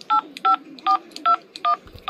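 Cash register keypad beeping: six short touch-tone beeps, about two and a half a second, each a slightly different pitch, as keys are pressed.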